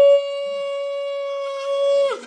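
Conch shell (shankh) blown in one long, steady note that drops in loudness a moment in.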